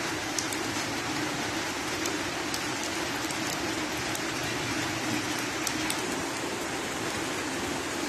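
Light drizzle falling: a steady hiss of rain with scattered small drop ticks and a low steady hum underneath.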